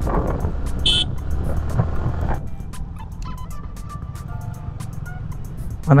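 Yamaha R15 single-cylinder motorcycle riding in fourth gear, engine and wind noise as a steady rumble, growing quieter from about halfway as the bike slows. A short high-pitched beep sounds about a second in.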